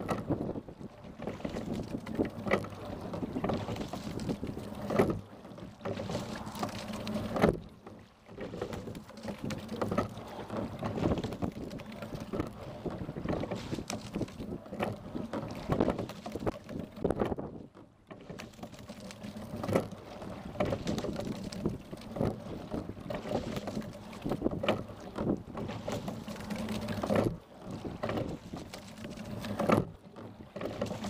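A single racing scull being rowed, heard from on board: the rush of water along the hull, with a knock from the oars and gear at each stroke.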